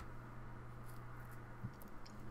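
Quiet room tone with a steady low hum and one faint click about a second and a half in; no breaker blows are heard.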